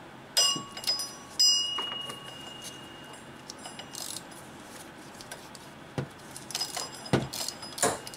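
A steel ratchet and socket clinking against metal in an engine bay as they are fitted onto a bolt. Two sharp ringing clinks come near the start, the second ringing on for over a second, then a few lighter knocks and clicks near the end.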